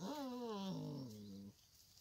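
A Šarplaninac puppy gives one long whine that falls steadily in pitch and stops after about a second and a half.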